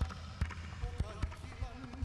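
A man's voice performing a hula chant, its pitch wavering, over sharp hollow percussion strikes in an uneven beat of about three a second.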